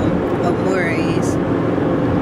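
Steady road and engine noise inside a moving car's cabin, with a brief rising vocal sound from a person about a second in.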